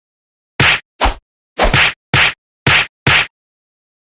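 Seven short, sharp whacks in quick succession, about half a second apart, each cut off into dead silence as in a rapid edit of clips.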